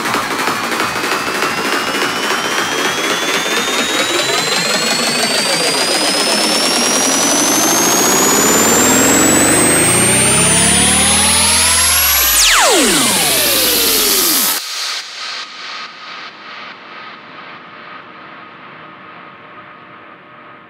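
Progressive psytrance build-up: layered synth sweeps rise in pitch and grow louder for about twelve seconds, then a steep downward pitch dive, and the music cuts off suddenly, leaving a fading tail of repeating echoes.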